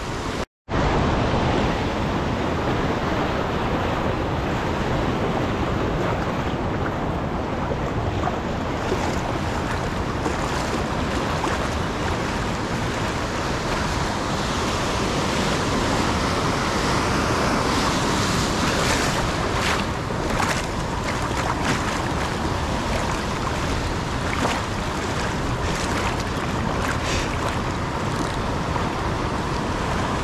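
Ocean surf in the shallows: waves breaking and water washing and swirling, a steady rushing noise with some wind buffeting the microphone. The sound drops out for a moment about half a second in.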